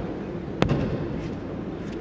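A single sharp slap on the martial-arts mat about half a second in, echoing in a large hall, over steady hall noise.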